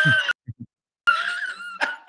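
A man's high-pitched, drawn-out laugh, in two stretches with a short break between.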